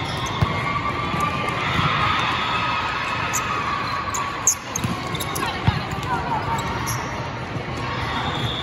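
Volleyball rally: the ball is struck and passed with sharp thumps, about three in these seconds, over players' calls and spectators' chatter.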